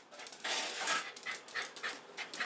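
Excited dog panting: a longer breathy huff about half a second in, then quick short breaths.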